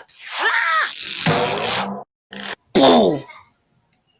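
Cartoon vocal exclamations and noises: a short rising-and-falling yelp, a hissing burst, then a falling groan-like cry near the end.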